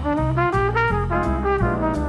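Background music: an upbeat jazzy tune with a brass melody over a moving bass line and light percussion.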